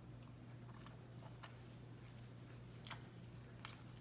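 Faint chewing of a soft bite of egg, sausage and cheese bake: a few soft mouth clicks scattered through, over a low steady hum.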